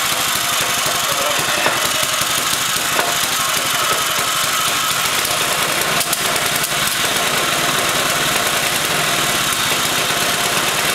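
Freshly rebuilt Honda 4.5 hp single-cylinder four-stroke go-kart engine running steadily at idle on its first test run after the valves were lapped.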